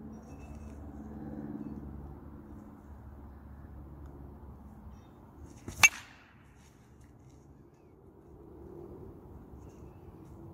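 A single sharp crack of a baseball bat striking a pitched ball, a little under six seconds in, over a steady low hum.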